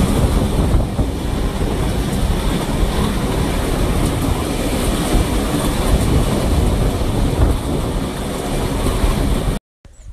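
Wengernalpbahn rack-railway train running along the track, a loud, steady rumble and rush of noise heard from the open window with the air rushing past. It cuts off suddenly near the end.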